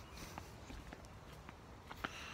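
Faint footsteps, a few soft, irregular steps of someone walking.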